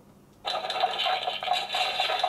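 Tom Nook 'Tonton Kankan' kitchen timer's alarm going off as its countdown reaches zero, about half a second in: a steady, rattling hammer-and-build sound effect that keeps playing.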